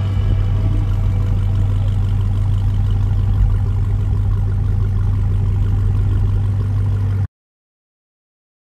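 Dodge Charger SRT Hellcat's supercharged 6.2-litre V8 idling steadily through its quad exhaust, a deep, low-pitched sound. It cuts off abruptly about seven seconds in.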